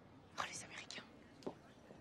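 A woman whispering a few hushed words, heard faintly about half a second in, with a small click shortly after.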